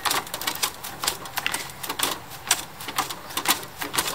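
Trials bicycle's freewheel ratcheting in short, irregular clicks as the rider makes small pedal strokes to creep up the ramp while balancing.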